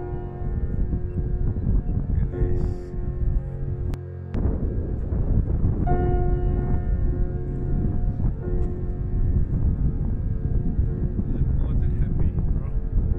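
Strong mountain wind rumbling on the microphone, mixed with soft background music of long sustained notes. The sound dips briefly about four seconds in.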